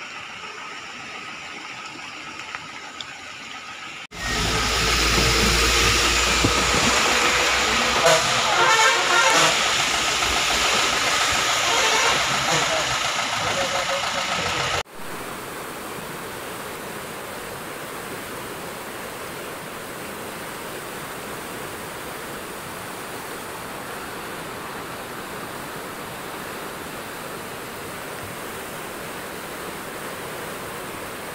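Floodwater rushing steadily over a submerged concrete causeway, a torrent overtopping the low bridge after heavy rain. Before it, from about four to fifteen seconds, a much louder passage with a deep rumble cuts in and stops abruptly.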